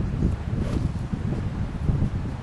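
Wind buffeting the camera microphone: a steady low rumble with uneven gusts.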